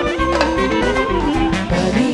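Live wedding band playing a Balkan horo dance tune, a saxophone carrying the melody over a steady bass beat.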